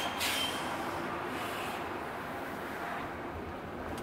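Road and tyre noise heard inside the cabin of a Jaguar I-PACE electric robotaxi driving along a city street: a steady hiss and rumble with no engine note. A brief faint high tone sounds right at the start.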